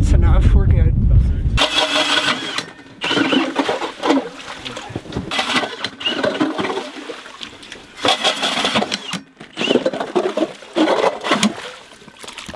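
Ice auger boring a hole through lake ice: uneven, machine-like grinding and churning that rises and falls as the auger cuts. The first second and a half is covered by wind rumbling on the microphone.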